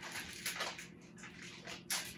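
Faint rustling with a few light clicks as a small cardboard carton of tomato paste is handled at the counter.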